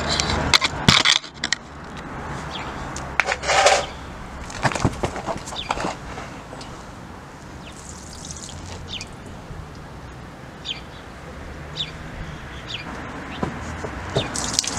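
Coolant, mostly tap water, draining from the Mazda Bongo's cooling system in a thin stream and splashing steadily into a puddle on tarmac. A few knocks in the first four seconds as the drain pipe is adjusted.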